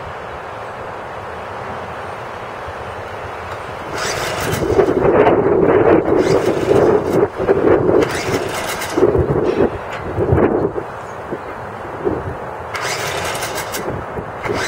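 1986 Evinrude 4 hp Yachtwin two-cylinder two-stroke outboard, lower unit in a tub of water, firing up about four seconds in. It runs unevenly, surging and fading several times, then picks up again near the end.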